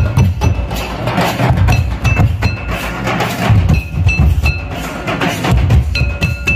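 Tribal dance music driven by drums, with a steady pattern of deep drum strokes and short high ringing notes recurring over them.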